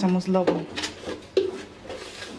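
A woman's voice speaking: one phrase at the start and another short one about halfway through.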